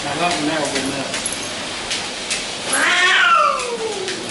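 A cat meowing: one long meow, falling in pitch, about three seconds in.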